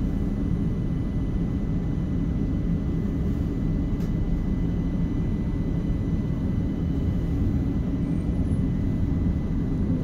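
Steady low rumble inside a CAF Urbos 100 light rail tram, with a faint steady high tone above it.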